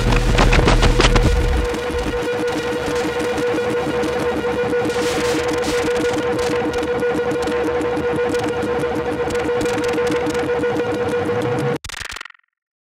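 Electroacoustic music: a steady held mid-pitched tone over a dense texture of rapid crackles. A deep rumble drops away about two seconds in, and the sound cuts off abruptly near the end.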